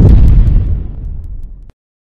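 A deep rumbling boom, a cinematic title sound effect. It peaks in the first half second, decays, and cuts off abruptly near the end.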